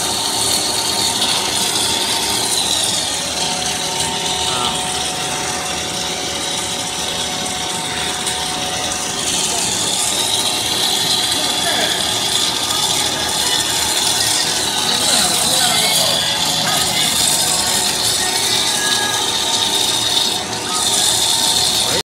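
Twist corn snack extruder running steadily: a constant machine drone with several steady tones under a high hiss that wavers, as it extrudes a continuous twisted corn puff rope.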